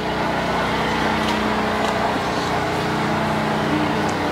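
A running motor's steady hum.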